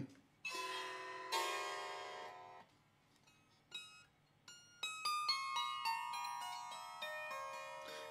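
Plucked wooden zither-type string instrument: two chords sounded close together ring and fade, then after a pause single notes are plucked in a descending run, each one ringing on under the next.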